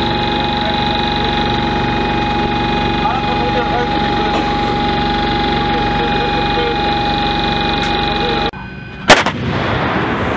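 Steady hum with a constant high whine from the machinery inside a self-propelled howitzer's turret. It cuts off, and about nine seconds in a single very loud artillery shot rings out as a howitzer fires, followed by a rumbling echo.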